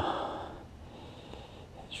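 A climber's breath near the microphone: one soft exhale that fades out within about half a second, then a faint steady background hiss.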